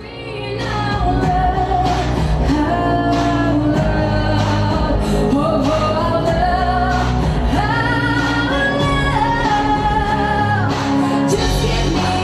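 A woman singing a pop song into a microphone over amplified backing music with a strong, steady bass. The music swells up in the first second and then holds loud.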